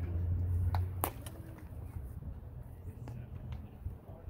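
A pitched baseball popping into the catcher's leather mitt: one sharp crack about a second in, over a low rumble.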